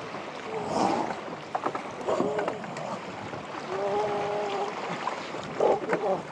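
Wind buffeting the microphone over an open sandbank, with faint surf. A few brief voice sounds break through, and one short held call comes about two-thirds in.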